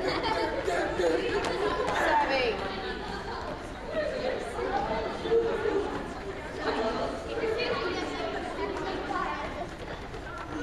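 Many children's voices chattering at once, overlapping and unintelligible, in a large gym, with the light footfalls of a group jogging on the wooden floor.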